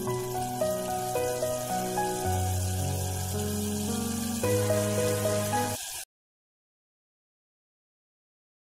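Background music of slow, held notes over a faint sizzle of masala frying in the pot; everything cuts off abruptly about six seconds in, leaving dead silence.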